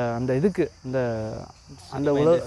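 A man talking in Tamil in short phrases, with a steady high chirring of insects behind his voice.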